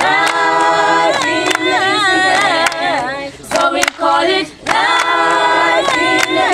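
Mixed group of teenage voices singing a cappella as a choir, holding chords in harmony in long phrases with brief breaks about halfway through.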